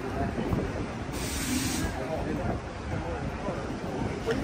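Street ambience: faint voices of passers-by over a low rumble of traffic, with a short hiss lasting under a second about a second in.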